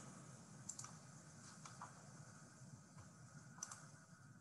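Near silence, broken by a few faint computer mouse clicks spread across the few seconds.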